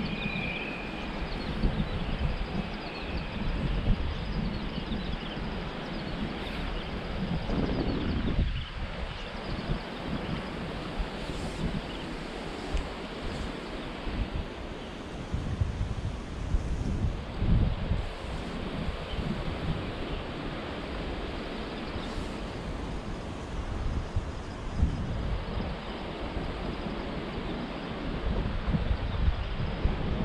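Wind buffeting the microphone over the steady rush of a shallow, rocky river, swelling and easing in uneven gusts.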